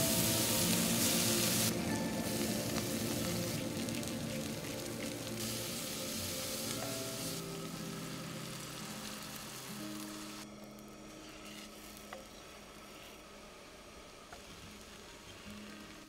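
Food sizzling in a hot cast iron skillet on a camp stove, meat patties and then vegetables with beaten egg frying, with some stirring. The sizzle is loudest at the start and fades away over the second half, under soft background music.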